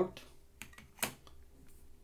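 Light clicks of a printed circuit board being handled as a plug-in board is pulled off its header pins, with one sharper tap about a second in.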